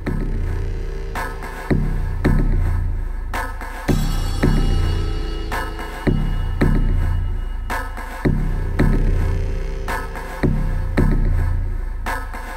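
A film-score-style synthesizer patch from a Reason Combinator playing a looping pattern: groups of short hits about half a second apart, each ringing out over a deep bass, with the pattern coming round about every two seconds. The patch is heard dry, its time-split effects bypassed.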